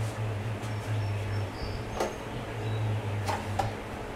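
Steady low machine hum, with a sharp click about halfway through and two short knocks near the end.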